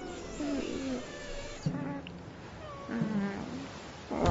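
A cartoon character's wordless, animal-like cries, each sliding down in pitch: one shortly after the start and one near three seconds, with a sharp sudden sound just before two seconds.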